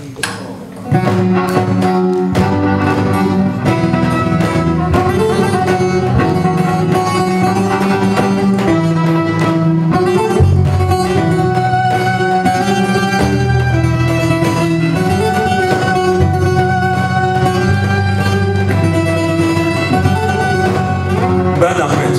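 Live instrumental music on bağlama (long-necked saz) and violin, coming in about a second in and then running steadily, with long held notes over plucked strings.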